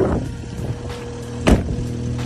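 A car door swung shut with one sharp slam about a second and a half in, over a steady low hum.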